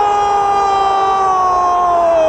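A male football commentator's drawn-out goal call on a single held note, falling slowly in pitch. It greets a goal just scored.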